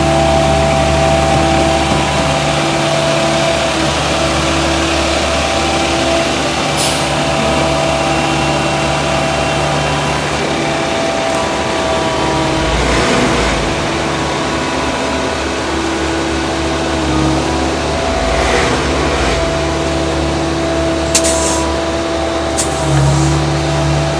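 Heavy truck engine running steadily, the asphalt-spraying truck of a road repaving crew, with a few short clicks near the end.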